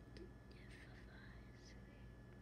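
Near silence: quiet room tone with a low steady hum and a few faint, soft high sounds in the middle.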